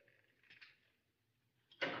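Near silence in a large, echoing studio space: the echo of a voice dies away, with a faint brief sound about half a second in.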